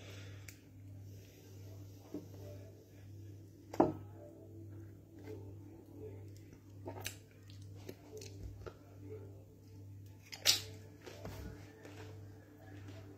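Faint background music over a steady low hum, broken by a few sharp clicks and knocks from the curry being picked at by hand in its plastic ready-meal tray. The loudest knock comes about four seconds in and another near the end.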